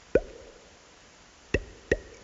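Three short, sharp pitched plops from a live electronic performance, each bending quickly upward to the same tone before dying away. One comes just after the start, and two come close together near the end.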